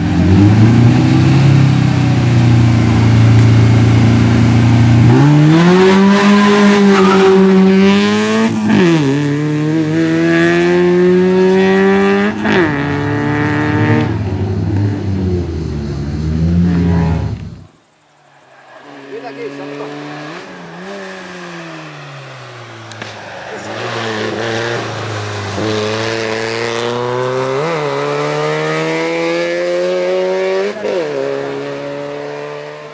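Peugeot hatchback race car's engine, first held at steady revs, then accelerating through the gears, the pitch climbing and dropping back at each shift. Just past halfway the sound cuts out briefly and returns quieter, the engine again pulling up through the gears.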